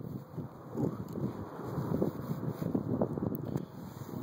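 Wind buffeting the microphone outdoors, a low, uneven rumble that swells and drops irregularly.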